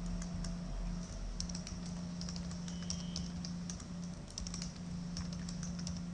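Keys of a computer keyboard being typed in quick, irregular clicks while a password is entered, over a steady low hum.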